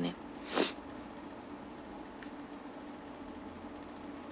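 A young woman's single short, sharp breath noise through the nose or mouth about half a second in, then a faint steady hum of room tone.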